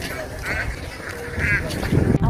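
Domestic ducks quacking: two short quacks about a second apart.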